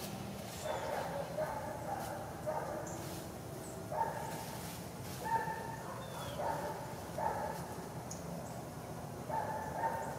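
A dog barking repeatedly, short calls coming roughly once a second with irregular gaps.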